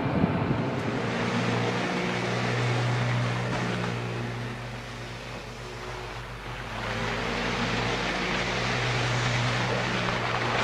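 Steady motor drone with a strong low hum. It fades about halfway through and then picks up again.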